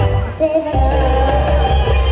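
A young female singer singing live into a handheld microphone over a loud backing track with a heavy bass beat. The bass drops out for a moment near the start and comes back just before a second in.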